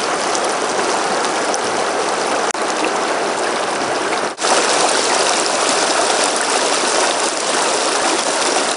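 Shallow river water rushing steadily over and between rocks, with a short drop in level a little after four seconds in.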